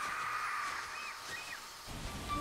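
Jungle ambience sound effect: a soft, steady hiss with three short bird chirps about a second in.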